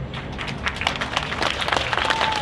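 Outdoor audience applauding at the end of a song: scattered claps that quickly build into denser clapping.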